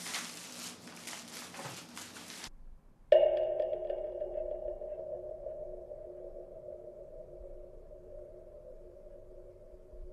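A film-score drone: after about two and a half seconds of rustling noise and a brief gap, a sudden low sustained tone made of several steady pitches enters, then slowly fades.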